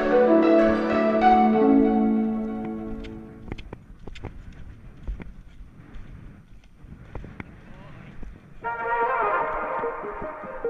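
Background music: sustained brass-like chords that fade away about three seconds in, a quieter stretch with scattered soft clicks and knocks, then busier synth music returning near the end.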